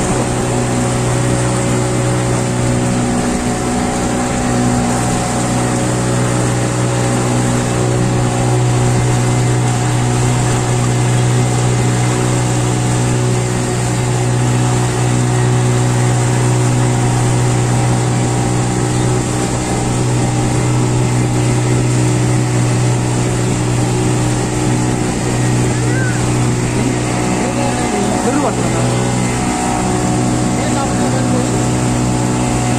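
Passenger motorboat's engine running steadily at cruising speed, a constant low drone that holds one pitch throughout.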